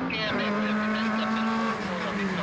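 Rally car engine pulling hard as the car approaches, shifting up a gear right at the start, then holding a steady note that begins to drop near the end.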